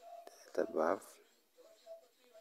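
A man's voice speaking one short word about half a second in.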